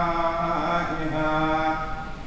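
A man reciting the Quran in Arabic, a slow melodic chant with long held notes that step in pitch, trailing off near the end.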